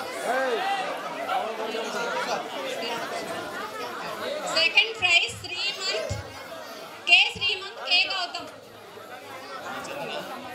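Many people chattering at once in a large hall, with no single voice standing out. Two louder bursts of high-pitched sound come about five and seven seconds in.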